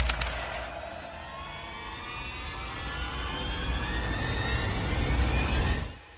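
Horror intro sound effect: a rising, building tone that climbs in pitch and loudness over a deep rumble, then cuts off suddenly near the end.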